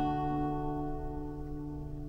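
An acoustic guitar's open D major chord, strummed just before, ringing out and slowly fading.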